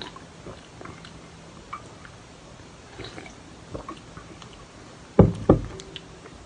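Faint sounds of drinking from a can, then two loud knocks on a wooden desk near the end, about a third of a second apart, as the can is set down.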